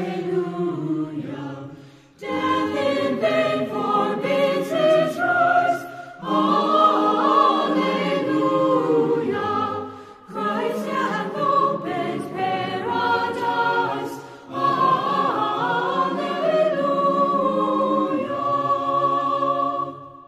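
A choir singing unaccompanied, in phrases of about four seconds with short breaks between them. The last note is held and fades out at the end.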